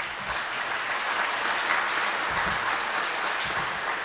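Audience applauding steadily, tapering off near the end.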